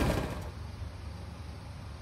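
Quiet outdoor background with a faint, steady low rumble, after a louder sound fades out in the first half second.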